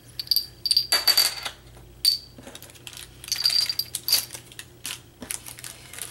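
Small metal flair buttons clinking against one another as they are handled and set down, a series of sharp irregular clicks, several with a brief high metallic ring, along with some plastic packaging rustling.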